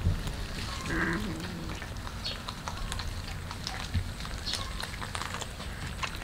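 Several cats chewing raw whole fish, making many small wet crunches and clicks, with a brief cat call about a second in.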